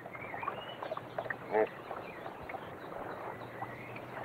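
Quiet outdoor background noise by the water, with faint wavering high tones and a short hum-like vocal sound about one and a half seconds in.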